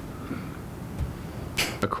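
A pause in talk in a meeting room: low room tone for about a second and a half, then a short breathy hiss near the end as a man draws breath and begins to speak.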